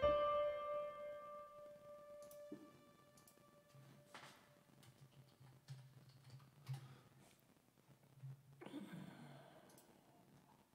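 A chord struck once on a digital piano and left to ring, fading away over about three seconds. Afterwards only faint clicks and a short breathy noise near the end.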